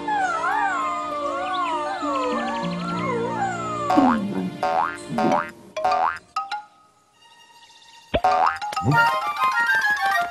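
Cartoon background music: a wavering melody over held low notes. About four seconds in come several quick falling 'boing'-like sound effects, then a short lull. A fast rising swoop about eight seconds in leads into a run of short plucked notes.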